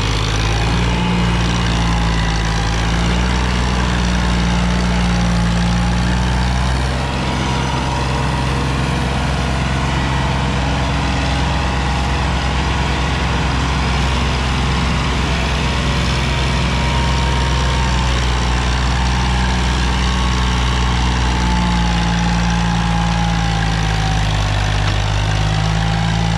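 Sonalika DI-35 tractor's three-cylinder diesel engine running steadily under load, hauling a heavily loaded sand trolley over soft ground. The engine note eases a little about a quarter of the way in and picks up again near the end.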